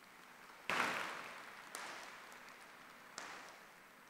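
Faint audience applause that starts about a second in, swells again twice and dies away.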